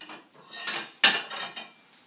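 Ceramic plates knocking and clattering as a plate is taken out of a low kitchen cupboard. There are a few knocks, the sharpest about a second in, followed by a brief rattle.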